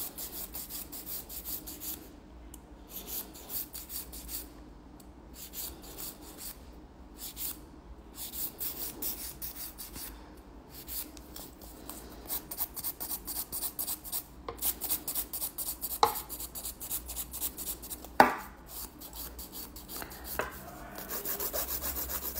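Hand nail file rasping back and forth across a fingernail coated in acrylic gel, in quick repeated strokes that come in runs with short pauses, as the nail's free edge and sides are filed to shape. Two short knocks sound in the second half.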